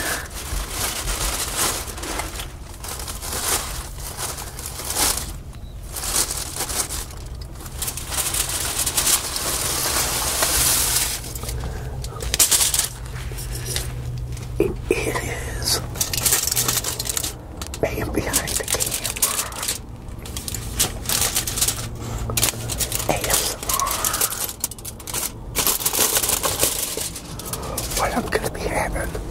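Aluminum foil crinkling and tearing in irregular bursts as it is pulled off a plate, over a steady low hum.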